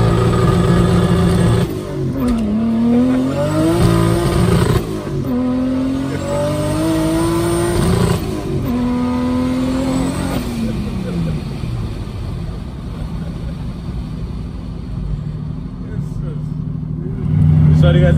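Swapped-in Toyota 2JZ-GTE turbocharged straight-six heard from inside the Hilux's cab, pulling hard through the gears: two rising runs of about three seconds each with a gear change between them, then the revs fall away and it settles into a quieter, lower cruise. A faint high whistle rises over each pull. It is a bit loud inside the cab.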